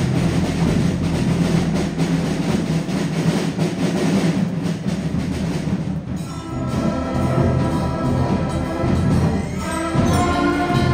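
Student concert band playing, with busy drumming at first; about six seconds in the drumming thins and the wind instruments hold chords.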